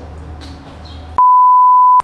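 A steady, high-pitched single-tone beep edited over the soundtrack, starting a little over a second in and cutting out everything else: a censor bleep over a spoken word.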